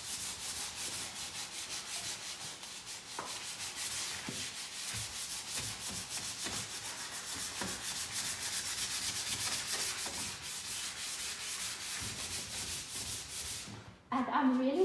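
Sheet of 100-grit sandpaper rubbed by hand over a plastic wheelie bin in quick, even back-and-forth strokes, scratching the plastic rough to cut its oily coating. The sanding stops just before the end.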